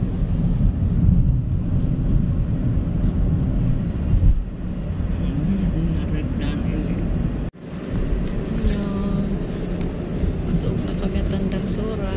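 Steady low rumble of road and engine noise inside a moving Toyota car's cabin. The sound cuts out for a moment about seven and a half seconds in, and faint voices are heard in the cabin after it.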